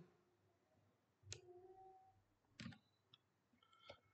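Near silence broken by three faint clicks, roughly a second and a quarter apart.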